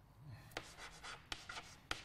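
Chalk writing on a blackboard: faint scratching strokes punctuated by several sharp taps as the chalk strikes the board.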